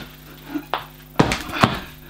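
Tennis balls tied on a string, swung as a flail, thumping against a hanging punching bag: one strike at the start, then two more a little past a second in.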